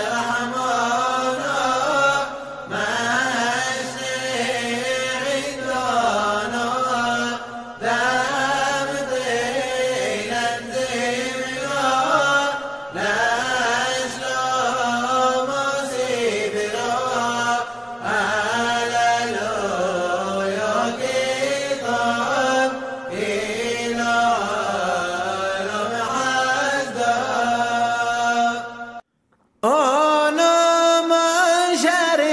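A man's voice chanting a Hebrew piyyut for Simchat Torah in the Yemenite style, in long ornamented phrases with brief breaths between them. It stops for under a second near the end, then a new phrase begins.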